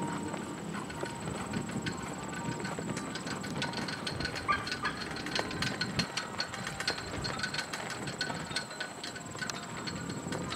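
A horse trotting, its hoofbeats on the arena footing heard as a run of short clicks, over a steady high-pitched whine.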